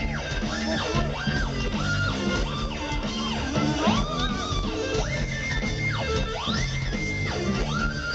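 Live heavy rock band playing loudly through a festival PA, heard from within the crowd. Distorted electric guitar repeatedly slides up to a held high note and back down, over a pounding bass and drums.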